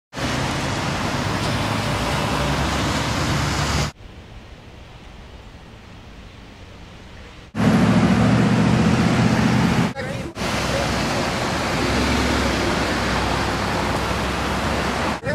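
Outdoor roadside noise of traffic, a steady rush that drops sharply quieter about four seconds in and comes back louder about seven and a half seconds in, with a heavier low rumble for the next couple of seconds.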